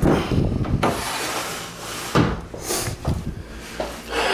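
Sliding glass doors of a reptile enclosure being pushed shut, scraping along their track: one long scrape in the first second, then a shorter, louder one about two seconds in.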